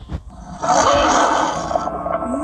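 A loud rushing, roaring noise that swells up about half a second in and breaks off just before the end, with faint music tones beginning under it.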